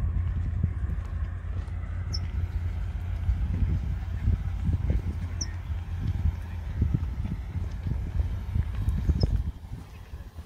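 Wind buffeting the camera microphone: a heavy low rumble with uneven thumps that drops off sharply near the end.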